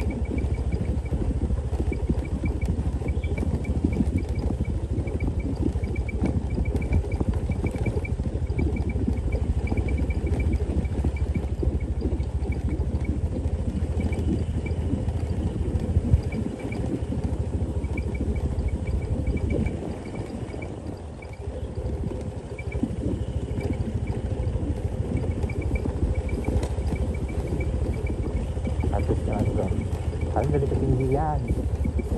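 Motorcycle running at low speed over a cobblestone road: a steady low rumble of engine and road rattle that dips briefly about twenty seconds in.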